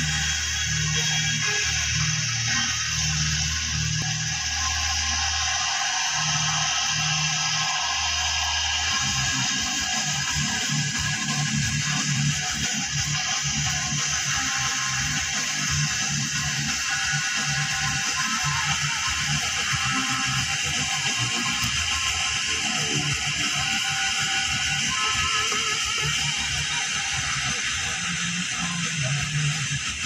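Music from an FM radio broadcast on 97.4 MHz, playing through a Pioneer car stereo's speakers inside the car. The bass line changes about nine seconds in.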